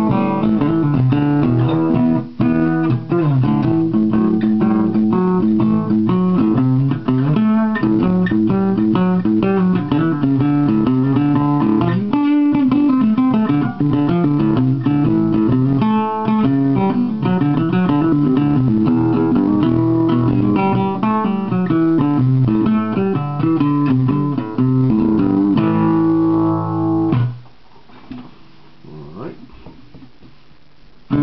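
Takamine Santa Fe SF-95 acoustic guitar played solo: a steady run of picked notes and chords that stops about 27 seconds in, after which only faint sounds remain.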